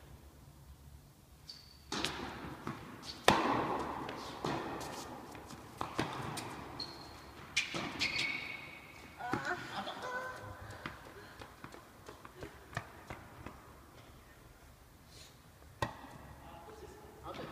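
A tennis rally: the ball is struck by rackets and bounces on the hard court, a series of sharp hits about a second apart, each echoing in a large indoor hall. The loudest hit comes about three seconds in, with a few short high squeaks between the hits.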